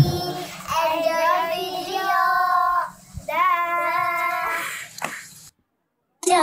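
A child's voice singing a slow melody in two long phrases of held notes, fading away and breaking off shortly before the end.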